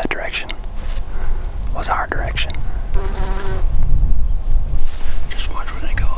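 Low wind rumble on the microphone under a few whispered words, with a short steady buzz about three seconds in, like a fly passing close.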